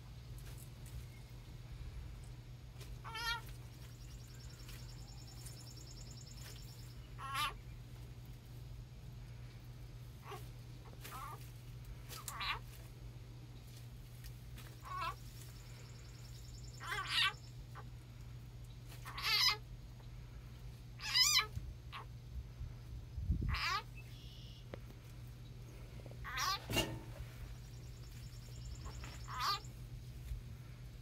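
Short, wavering animal calls, about a dozen of them, each a fraction of a second long and coming every two to three seconds, over a steady low hum.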